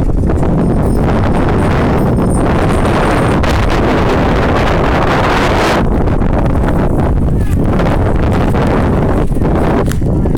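Wind buffeting the microphone of a phone carried on a moving bicycle: a loud, steady, deep rush with no letup.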